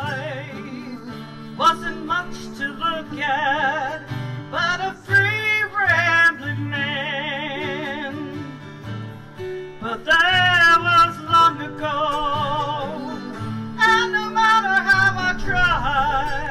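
Live acoustic music: a woman singing long held notes with a wide vibrato, over acoustic guitar and mandolin.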